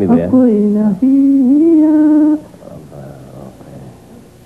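A man's voice carrying a tune without accompaniment into a microphone: long held notes that bend slightly in pitch, halfway between singing and humming, for about two and a half seconds, then falling away to a faint murmur.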